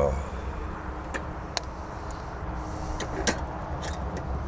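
Sicilian honeybee colony humming in an open wooden leaf hive, over a low steady rumble, with several light clicks and knocks. The hum is the restless roar that the beekeeper reads as a sign that the colony is queenless.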